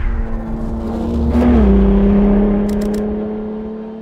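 Race-car engine rumble swelling and fading as the car sweeps past, mixed with a held droning tone that steps down in pitch about a second and a half in and then stays steady.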